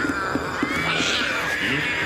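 A crowd of cartoon cats meowing at once, many overlapping cries rising and falling in pitch, with music underneath.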